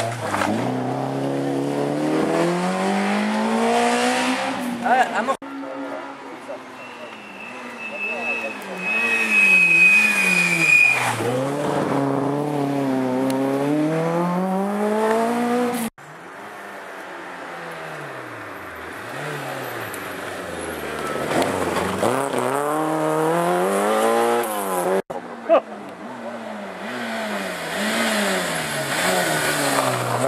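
Rally cars passing one at a time on a gravel stage, among them a Peugeot 205 and a Peugeot 106: their engines rev up and drop back again and again as they take the corner and accelerate away. Each pass stops abruptly where the next begins, and in the second one a high squeal sounds for a few seconds.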